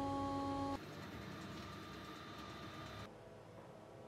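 A steady hum made of several held tones, which cuts off abruptly under a second in. A fainter steady hum with a few high tones follows and drops away about three seconds in.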